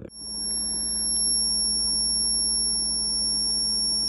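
High-voltage arc from a stainless steel inductor's lead onto a water bath, with the transformer circuit energised: a steady high-pitched whine over a low electrical buzz, cutting in suddenly right at the start.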